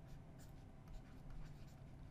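Faint scratching and light taps of a stylus writing on a tablet screen.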